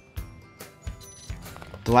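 Digital multimeter's continuity tester giving short beeps as the probes touch the LED-strip connector's contacts, signalling a good connection, over background music.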